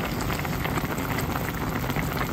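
A pot of pork, mushroom and taro soup at a rolling boil: steady bubbling with many small pops.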